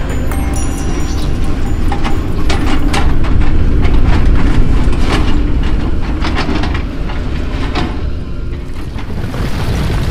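Crawler bulldozer working landslide rubble: a heavy, steady low engine rumble with irregular clatters of rock, loudest in the middle. Background music plays along.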